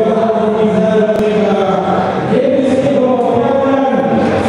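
A group of voices chanting together in long, held notes that change pitch every second or two.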